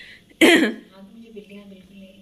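A person clears their throat once, a short loud cough-like burst about half a second in, followed by faint quiet sounds.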